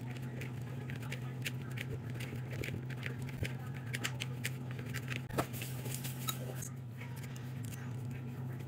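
Hands kneading soft, damp flour dough in a plastic mixing bowl: a run of small sticky clicks and squelches, with one sharper click about five and a half seconds in. A steady low hum runs underneath.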